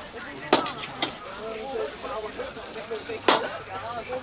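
A metal ladle clanking against a steel wok as rice noodles are stir-fried: three sharp strikes, about half a second in, about a second in, and just past three seconds, over a low frying sizzle.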